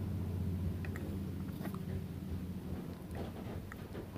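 Lino cutter blade carving short strokes into a soft Speedball Speedy-Cut rubber block: faint, scattered little scratching clicks as the blade bites and lifts out of the rubber. A steady low hum runs underneath.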